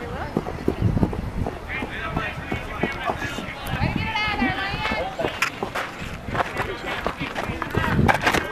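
Players and spectators shouting and calling out across a soccer field, with the footfalls of players running past and scattered short knocks.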